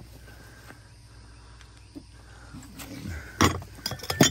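Quiet outdoor background, then near the end two sharp knocks from crystal glassware being handled on a plastic tote lid.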